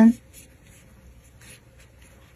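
Faint soft rustling and a few light scratches of yarn drawn over a metal crochet hook as a double crochet stitch is worked.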